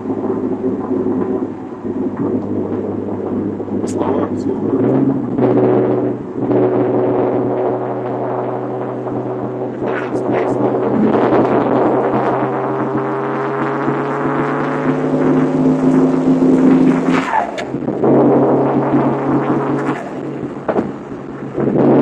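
Mitsubishi 3000GT VR-4's twin-turbo V6 heard from inside the cabin at freeway speed. The engine note climbs steadily under acceleration for about ten seconds, drops sharply at a gear change, then holds steady.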